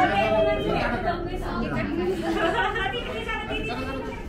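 Chatter of several people talking at once: overlapping adult and child voices.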